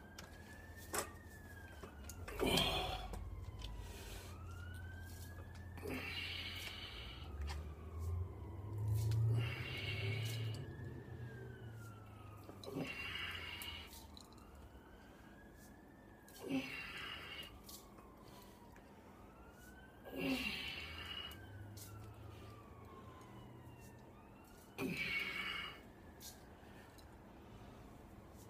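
A siren wailing slowly, its pitch rising and falling about every four seconds. Over it come loud, breathy exhalations about every three to four seconds from a man straining through barbell curls.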